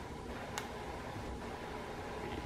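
Quiet room tone with one faint click about half a second in.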